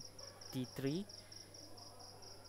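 Faint, even high-pitched chirping that pulses several times a second, like an insect, behind a short murmured syllable of voice about half a second in.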